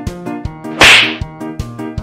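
A single loud, sharp slap about a second in, a hand striking a head, over upbeat background music with a steady beat.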